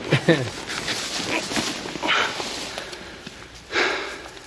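A short laugh, then footsteps rustling through grass and undergrowth with a couple of loud breaths as soldiers move quickly on foot.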